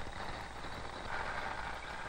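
Steady mechanical noise from a kinetic-theory gas model as it shakes many small balls about in its tray, swelling a little about a second in.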